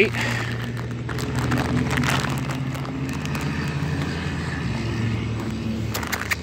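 A steady low engine hum, with faint voices in the background.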